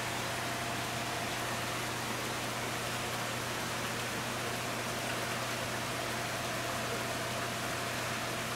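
Steady background hiss with a low, even hum and a faint thin tone above it, unchanged throughout.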